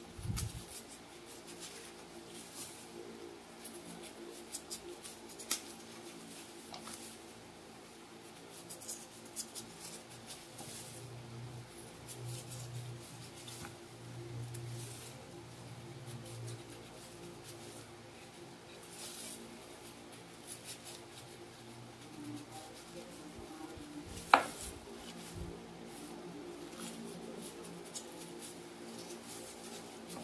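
Kitchen knife peeling green mangoes by hand: faint scraping and slicing through the skin, with light scattered clicks as the blade and peels touch the plastic basin, and one sharper click about 24 seconds in.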